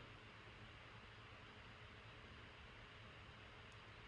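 Near silence: a faint, steady background hiss.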